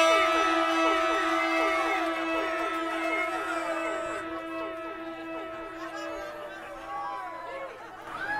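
One long held horn-like note that slowly fades out, with audience voices chattering and calling over it.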